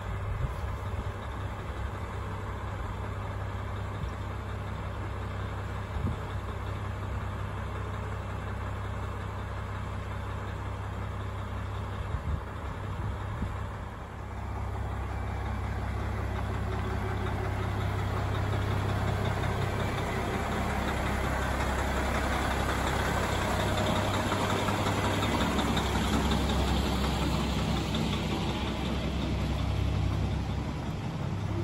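KiHa 40 diesel railcar's diesel engine idling steadily at the platform; about halfway through it grows louder as the engine is throttled up and the train pulls away.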